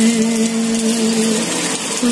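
A man singing a Nepali song unaccompanied, holding one long steady note for about a second and a half before his voice drops away, over a steady background hiss.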